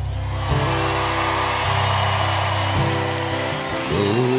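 Live folk-pop band music without vocals: strummed acoustic guitar over sustained bass notes, the chord changing roughly once a second.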